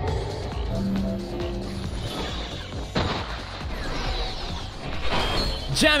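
Anime soundtrack from a magic fight scene: background music with action sound effects, including a sharp impact about three seconds in.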